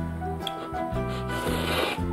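Background music with steady sustained notes, and near the end a short hissing rush as a mouthful of instant ramen noodles is slurped.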